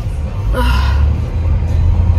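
A woman's long breathy sigh about half a second in, over the low steady rumble of a car cabin.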